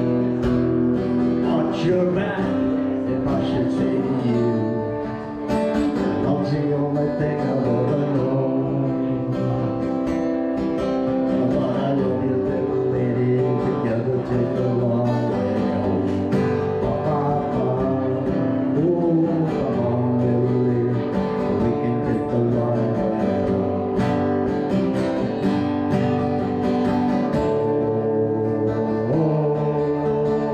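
Cutaway acoustic guitar strummed through a song's chords with no words sung, with a brief drop in level about five seconds in.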